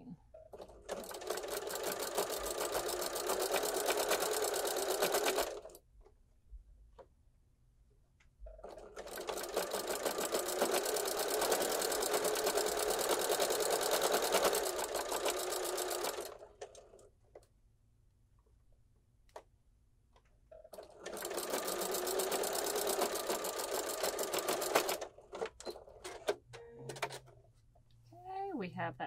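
Necchi home sewing machine with a walking foot stitching a hem in heavy upholstery fabric, running in three bursts of several seconds each with short pauses between.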